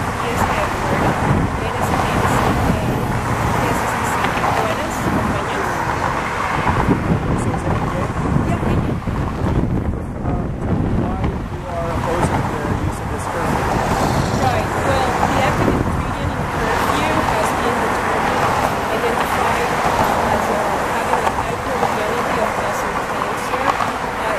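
A woman talking close to the microphone, over steady road traffic noise.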